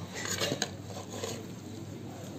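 Metal skimmer scraping and clinking against the inside of a metal kazan pot while lifting out stew, with a sharp clink about half a second in and a softer scrape a little later.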